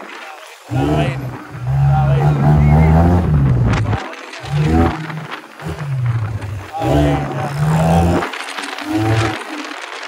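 A man's voice shouting loudly in several long, drawn-out calls with short breaks between them, without clear words.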